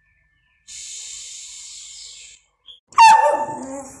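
A long 'shhh' shush, given as the way to hush a barking dog, then about three seconds in a small dog barks once, loudly.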